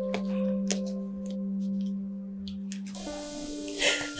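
Background film music of sustained, held tones like a slow drone. It shifts to a new chord about three seconds in.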